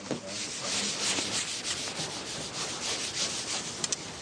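An eraser rubbing across a board in repeated strokes, clearing the previous working.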